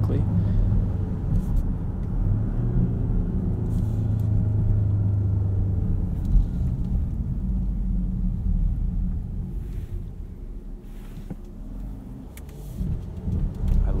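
The 2018 Land Rover Discovery's turbodiesel six-cylinder under way, heard from inside the cabin: a low, steady engine drone over tyre and road noise. The engine note firms up and climbs a little in the first few seconds, eases off and quietens for a few seconds after the middle, then builds again near the end.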